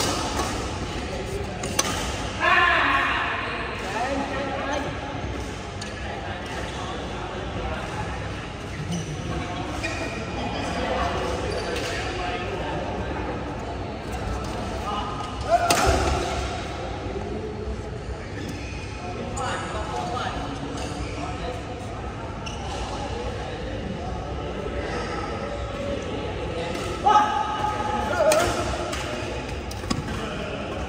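Badminton rally: a few sharp racket-on-shuttlecock hits, the loudest about halfway through, over people talking and calling out, echoing in a large indoor hall.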